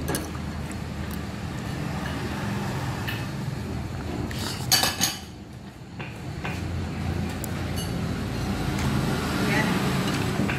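A spoon clinking against a bowl of noodle soup, with a few sharp clinks close together about halfway through, over a steady background murmur.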